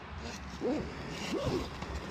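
Zipper of a fabric backpack being pulled open by hand.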